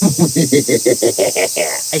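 A man's voice in a fast run of short syllables, over a steady high insect chirring.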